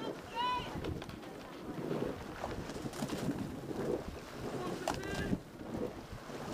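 Indistinct voices from the riverbank mixed with wind buffeting the microphone of a moving bicycle, with two short high-pitched squeals, about half a second in and near the end.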